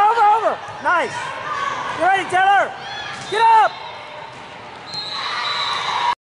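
Several short shouted calls from girls' voices in quick succession during a volleyball rally, each rising and falling in pitch, over gym echo.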